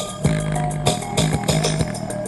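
A song played loud through a small TG113 Bluetooth speaker with bass boost on: a deep, held bass line under a steady drum beat.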